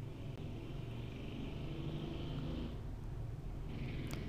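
Faint background noise with a steady low hum, and no distinct sound event.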